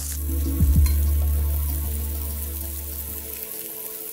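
Flour-dredged beef short ribs sizzling as they sear in olive oil in a hot stainless steel skillet while being turned with tongs. Background music with sustained low notes swells in just after the start and fades out before the end.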